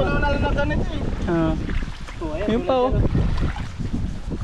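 People's voices talking in short bursts over heavy wind rumble on the microphone, with water splashing as hands grope through a shallow, muddy stream.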